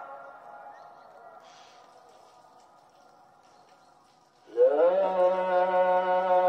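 The afternoon Islamic call to prayer (ezan), chanted by a muezzin and played over minaret loudspeakers through a central broadcast system. The previous phrase dies away in long echoes across the town, then about four and a half seconds in a new phrase begins loudly, sliding up into a long held note.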